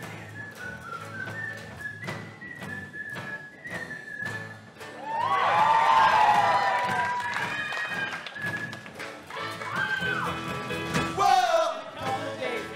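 Live rock band with keyboard, electric and acoustic guitars and drum kit playing an instrumental passage with a steady beat. A high thin melody line runs over the first few seconds, and the music swells to its loudest with voices about five seconds in.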